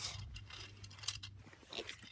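Faint handling noise: light scrapes and a few small clicks as a hand picks a plastic toy train engine up off a carpet.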